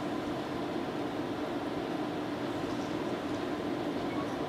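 Steady room tone of a large hall: an even hiss with a faint low hum, perhaps from the ventilation and sound system.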